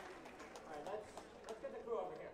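Faint voices in a large hall, with a few light clicks.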